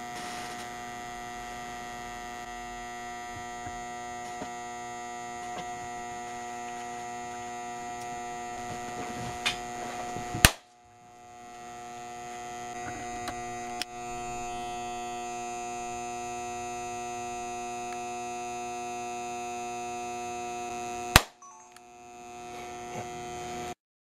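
Transient surge generator humming steadily with many fixed tones, cut by two sharp cracks about ten seconds apart as 17,000-volt transients discharge into the multimeter's voltage input. The meter's input breaks down under them. After each crack the hum drops away and builds back up.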